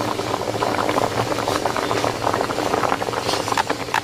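Pidi, small Kerala rice-flour dumplings, boiling in a thick white liquid in a steel pot: steady bubbling with a dense run of small pops.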